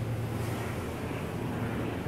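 Steady low rumble of a jet aircraft.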